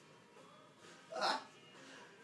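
A brief vocal sound from a person, a single short burst about a second in, over a faint steady background.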